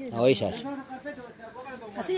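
Several people talking close by, with a short hiss in the first half-second.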